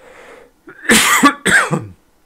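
A man coughing twice in quick succession, two loud, short coughs after a faint breath in.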